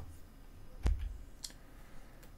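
A single sharp click about a second in, followed by a fainter tick half a second later, over quiet room tone.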